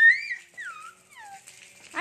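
A toddler's high-pitched squeal that glides up and then down, loudest in the first half-second, followed by a few softer falling squeaks.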